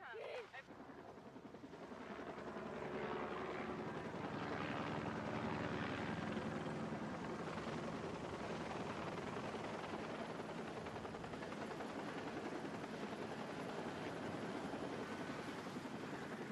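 Helicopter rotor and turbine noise with a fast rotor flutter, growing louder over the first few seconds, then steady as the helicopter comes in low to land.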